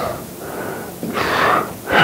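A man breathing out audibly twice close to the microphone, soft breathy hisses with no voiced sound, the second one about a second in and the stronger of the two.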